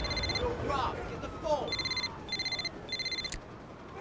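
A high electronic beep sounds four times in short bursts, the last three close together, over faint voices in the background.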